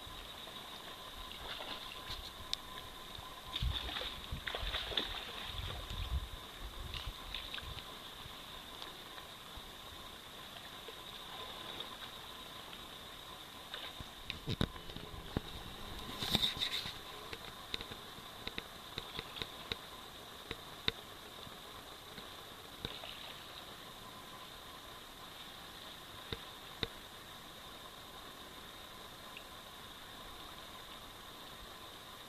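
Shallow gravel-bottomed salmon creek running, a faint steady rush of water, with scattered clicks and a louder clatter about halfway through.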